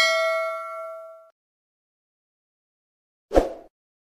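Notification-bell sound effect from a subscribe-button animation: a bright bell ding ringing out and fading away over about a second. A short, soft pop follows about three and a half seconds in.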